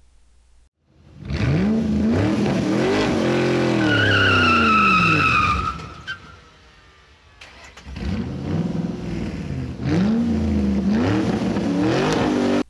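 Car engine revving up and back down twice, with a tyre squeal from about four seconds in that lasts nearly two seconds.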